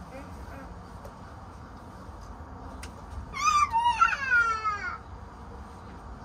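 A young child's high, wavering squeal that slides down in pitch, lasting about a second and a half and starting about halfway through.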